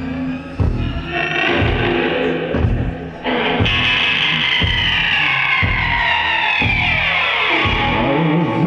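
Live psychedelic rock band playing, electric guitars over a steady low pulse from bass and drums. About three seconds in, a loud sweeping tone comes in and falls steadily in pitch over some four seconds.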